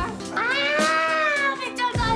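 Background music with one long, high vocal note that rises and then falls, lasting more than a second.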